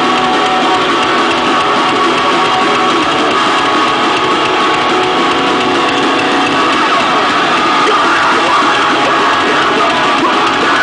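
A live rock band playing loud amplified music with guitars, heard from beside the stage. The level stays steady throughout.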